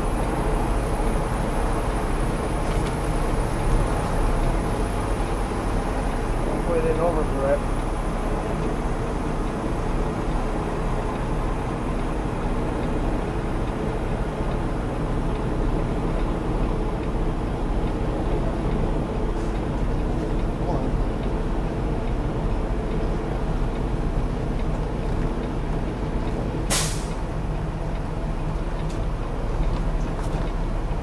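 Semi truck's diesel engine running steadily at low speed during a slow reversing manoeuvre, heard from inside the cab. About 27 seconds in, a short, sharp hiss of air from the truck's air brakes.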